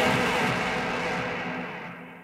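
The last chord of a rock song, with guitars, ringing out and fading away after the drums stop.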